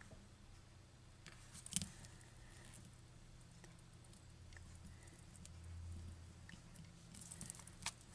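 Near silence with faint low room hum while a clear acrylic stamp block is pressed onto cardstock; one short, sharp tap about two seconds in, with a few faint ticks near the end.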